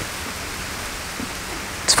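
Steady, even hiss with no distinct events: the recording's background noise floor, like microphone hiss. A spoken word begins right at the end.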